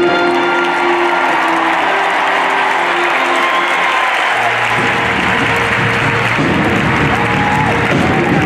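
Audience applauding in a large concert hall over music. The earlier music fades in the first couple of seconds, and new low sustained notes come in about four and a half seconds in.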